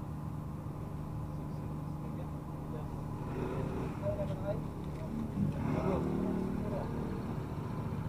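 Steady low hum of a ferry's machinery in its enclosed vehicle deck, with faint chatter of people nearby partway through.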